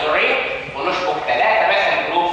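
Speech only: a man lecturing, his voice not picked up as words by the recogniser.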